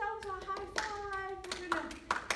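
Several hand claps over a woman's voice holding one long note that slowly falls in pitch.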